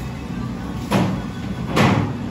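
A steady background hum with two short scraping knocks, about a second in and just before the end, as a stainless steel mixing bowl is handled on the prep bench; the second knock is the louder.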